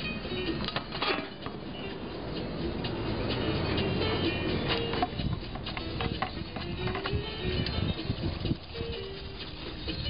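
Music playing under the wet sloshing and rubbing of paint tools being washed out by hand in a plastic bucket of water, with a few knocks and clinks of the tools.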